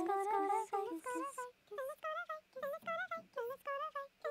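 A short sung vocal sample played from MIDI in the Groove Agent SE sampler, repitched across the keyboard as a quick run of short notes, several a second. The first notes are lower; after a brief gap about a second and a half in, the notes run higher.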